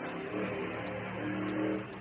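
A car engine running steadily, swelling a little past the middle and easing off just before the next words.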